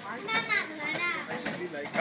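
A young child's high-pitched voice, vocalizing in short phrases.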